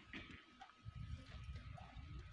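Near silence: faint low rumbling ambience with a few soft, irregular low knocks.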